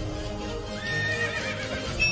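A horse whinnies once, a wavering, trilling call lasting about a second that starts just under a second in, over background music.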